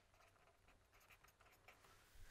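Faint scratching of a pen writing on paper, otherwise near silence.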